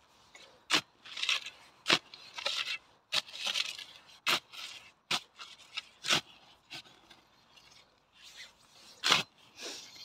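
A spade being driven into loose soil and worked through it: a sharp chop roughly every second, with scraping of the blade through the dirt in between, and a pause of a couple of seconds near the end.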